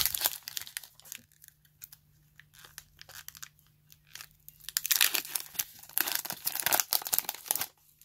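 Foil Pokémon booster pack wrapper crinkling and tearing as it is opened by hand, with a few loud crackles at first, then scattered small crinkles, then a dense run of crackling and tearing from about halfway in that lasts some three seconds.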